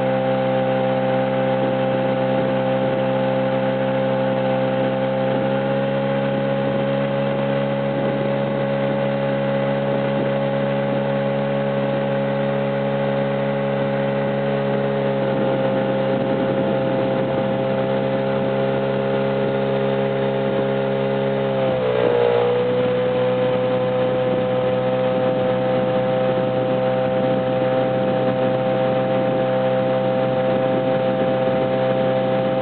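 Outboard motor of an inflatable boat running steadily at cruising speed. Its pitch dips briefly about two-thirds of the way through, then holds steady again.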